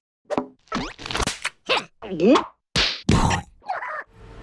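Cartoon larva characters' quick string of short vocal squeals and grunts, mixed with short comic sound effects. There are about nine separate bursts, several sliding up or down in pitch.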